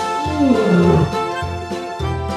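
A lion roar sound effect, one roar falling in pitch over about a second, played over children's background music.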